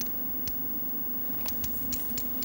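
Quiet studio room tone with a steady low hum, broken by a few light clicks of cards and chips being handled at a poker table.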